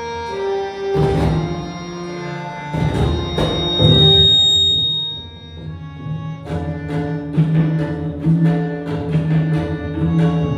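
A group of students playing tabla in unison over a steady, sustained melodic accompaniment. The drumming thins out briefly about halfway through, then the ensemble comes back in with dense, rapid strokes.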